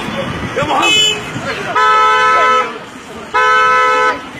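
Vehicle horn sounding: a short, higher toot about a second in, then two long, steady blasts of nearly a second each, with voices in between.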